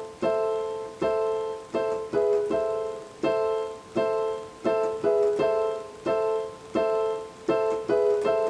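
Yamaha digital keyboard with a piano voice, playing right-hand chords: about a dozen struck chords in a syncopated rhythm, each decaying before the next. The right hand moves back and forth between A minor (A C E) and E major (G sharp B E), a half step down.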